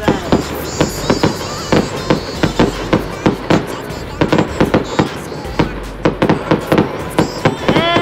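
Aerial fireworks going off: rapid, irregular bangs and crackles, several a second. A brief high-pitched tone rises and falls near the end.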